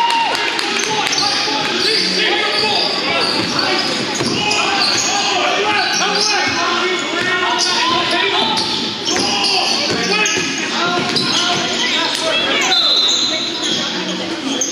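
A basketball game on a hardwood court: the ball bouncing as it is dribbled, sneakers squeaking on the floor, and players and spectators calling out.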